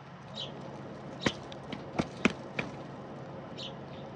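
Mourning doves pecking at a pile of sunflower and millet seed close to the microphone: a string of sharp pecks, the loudest four bunched together in the middle. A short high bird chirp sounds near the start and again near the end.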